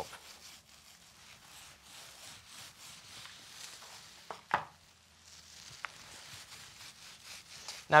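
Faint brushing and dabbing of a brush laying resin over fiberglass mat. About halfway through there is one short, louder knock or scrape as the brush goes into the resin pot.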